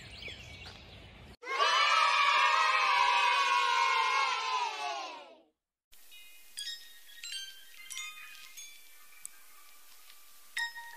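A crowd of children cheering, cut in abruptly about a second in and fading out after about four seconds, laid over the footage as a sound effect. After a brief silence, light chiming mallet-percussion music begins.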